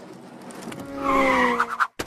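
A car tyre-screech sound effect: a hiss that swells over about a second and a half, with a slowly falling tone, then cuts off suddenly just before a sharp click at the end.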